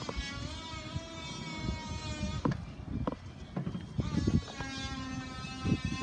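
Electric-hydraulic pump whining steadily as the 42 GLS's fold-down side beach platform is powered open. It stops a little over two seconds in, a few short knocks follow, and then a second steady whine runs through the last two seconds.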